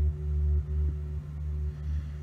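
Low, humming drone played back through the Empress ZOIA pedal's Quark Stream micro-loop patch, repeating in short loops that restart about twice a second, with a faint steady higher tone held above it.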